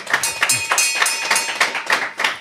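Applause: dense, rapid clapping, with a steady high ringing tone over the first second and a half.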